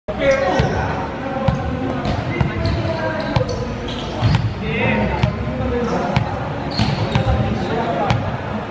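Volleyballs being struck and bouncing on a wooden gym floor: irregular thuds about once a second, echoing in a large hall, with players' voices.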